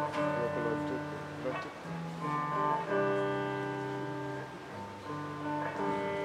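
Guitar music: plucked chords, each held and then changed every second or two.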